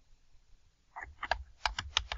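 Typing on a computer keyboard: a quick run of about six keystrokes, starting about halfway through.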